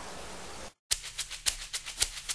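Low background hiss, then after a brief dropout about three-quarters of a second in, a run of sharp, evenly spaced ticking clicks, about four a second, in the manner of a clock-ticking music sting.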